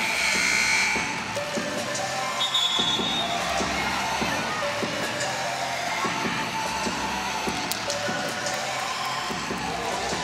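Arena music playing over the public-address system during a break in play, with a steady beat and a brief louder burst in the first second.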